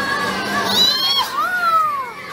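A young girl shouting: a short high-pitched squeal, then a long call that falls in pitch, over the murmur of a crowd.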